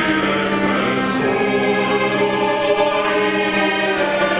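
Mixed choir singing slow, held chords with a small orchestra of strings and harp, the harmony moving to a new chord every second or two.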